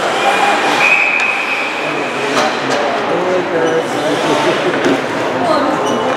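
Ice hockey arena din: many spectators and players talking and calling out at once in a large echoing rink, with a few sharp knocks.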